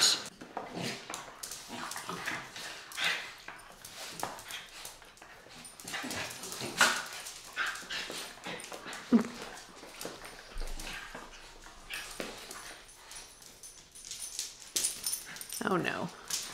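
Two West Highland white terriers play-wrestling on a tiled floor: irregular, short scuffling and dog noises coming and going, loudest around six to seven seconds in.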